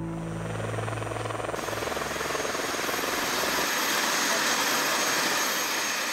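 Helicopter flying overhead: a fast, steady rotor beat that grows louder through the middle and eases slightly near the end, as background music fades out in the first two seconds.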